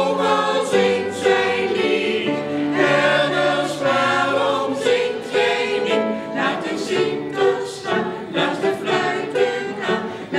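Mixed amateur choir singing together, accompanied on upright piano.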